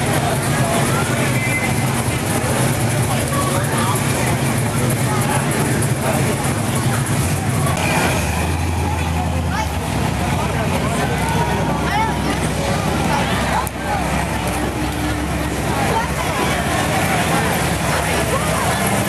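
Classic cars driving slowly past one after another, their engines giving a steady low sound, under the chatter of a crowd of onlookers.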